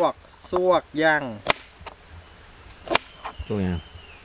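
Two sharp chopping strikes about a second and a half apart, over a steady high-pitched chirr of insects.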